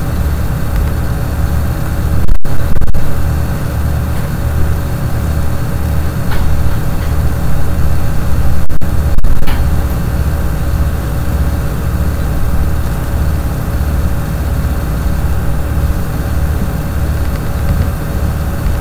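A loud, steady low rumble with a slow pulsing texture, briefly cutting out about two seconds in and again around nine seconds.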